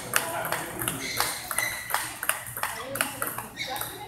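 Table tennis ball in a rally, struck by paddles and bouncing on the table: a quick run of sharp clicks, about three or four a second.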